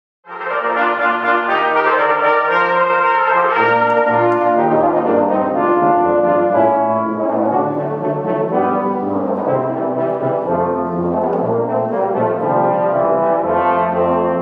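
Brass quintet of two trumpets, French horn, trombone and tuba playing a slow, sustained chordal passage. The tuba's low bass line comes in about three and a half seconds in.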